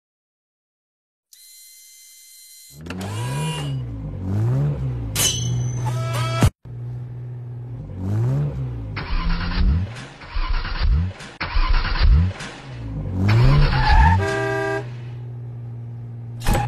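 Car engines running in street traffic, starting about three seconds in after near silence, with the engine note rising and falling over and over as the cars rev and pass. A short pitched tone sounds near the end.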